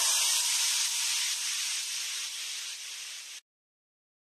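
A hissing wash of high-pitched noise left behind where the backing music ends. It fades steadily for about three and a half seconds, then cuts off abruptly into silence.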